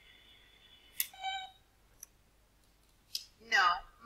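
A sharp click about a second in, followed at once by a short, buzzy electronic beep lasting about half a second. A fainter tick and another click come later, and then a single spoken word near the end.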